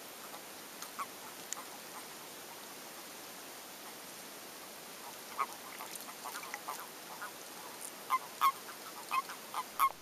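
Common toads (Bufo bufo) calling in the mating season: short croaking notes, a few at first, then coming thick, several a second, in the last couple of seconds, over a steady hiss.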